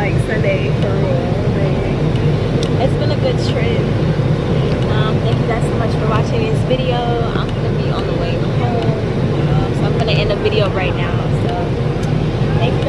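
Steady low rumble of an airliner cabin, with voices talking over it.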